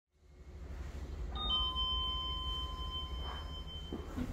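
A steady, high electronic tone sounds over a low hum. It comes in about a second and a half in, steps down slightly in pitch right at its start, and holds steady without fading.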